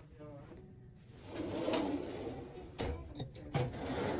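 Steel cabinet drawers sliding on their runners and banging shut: a rumbling slide a little over a second in, then two sharp metal clunks, and another slide starting near the end.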